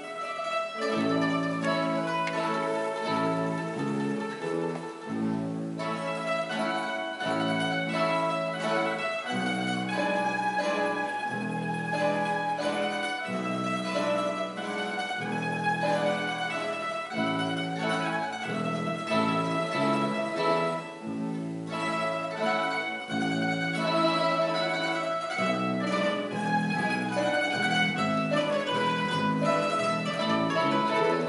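A Spanish plucked-string orchestra of bandurrias, laúdes and guitars playing a jota: a bright plucked melody over a bass line that changes note about once a second.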